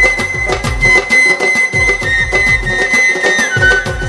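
Instrumental interlude of Bangladeshi baul folk music: a dhol drum beats a fast, dense rhythm under a high held melody note that steps down in pitch twice.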